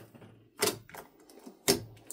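Thick slime being pressed and kneaded by hand, trapped air pockets popping with sharp clicks: two loud pops about a second apart, with softer crackling between.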